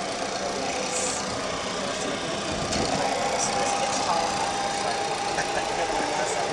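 Steady mechanical hum filling a Boeing 737-300 cockpit, with a constant high whine running through it.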